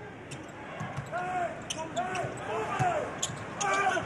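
Live basketball game sound: a basketball bouncing on the hardwood court, with players shouting, over arena background noise.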